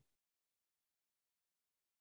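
Silence: the audio drops out completely during a pause in speech, with no room tone at all.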